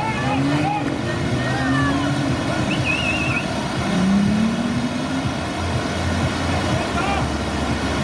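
Steady rushing of whitewater through a canoe slalom channel, with people's voices in the distance and a low steady hum underneath.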